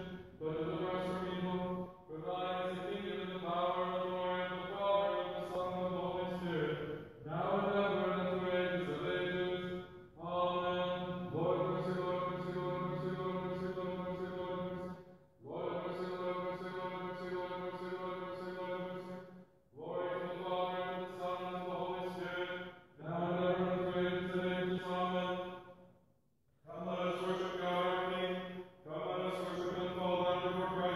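Liturgical church chanting: a voice intoning the service text on a mostly steady reciting tone, in phrases of three to four seconds with short breaths between them.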